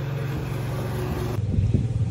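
Lawn mower engine running at a steady pitch. About a second and a half in, the sound changes abruptly to a lower, rougher rumble.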